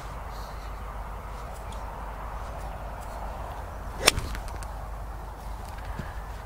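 A golf club strikes a ball once, a single sharp click about four seconds in, over faint steady outdoor background noise.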